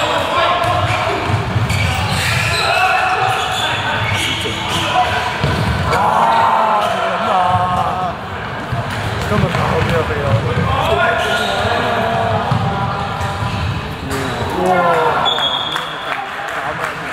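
A handball bouncing on an indoor court floor during play, with irregular thuds of ball and feet and players and spectators shouting in a large sports hall.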